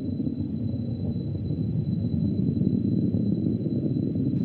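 Steady low rumble of a Soyuz rocket's first stage firing during ascent, with four strap-on boosters and the core engine still burning.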